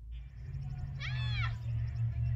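A child's single short, high-pitched call on an open lawn, about a second in, rising and then falling in pitch, over a steady low outdoor rumble.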